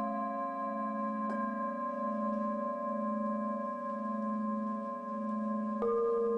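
Ambient music of sustained, ringing bell-like tones over a low, slowly pulsing drone. A new note is struck about a second in and another near the end, each ringing on.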